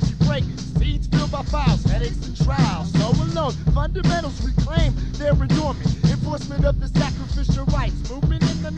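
Underground hip hop track from a 1996 cassette: rapping over a beat with a heavy bass line.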